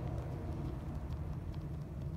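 Soapy fingers rubbing and scrubbing a wet ear, making faint wet clicks and squishes, over a steady low hum.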